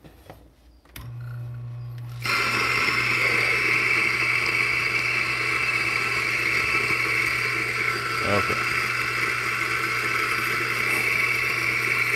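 Eureka Mignon Zero electric coffee grinder grinding an 18 g dose of espresso beans. The motor hum starts about a second in, and the grinding of the beans joins about a second later and runs on steadily.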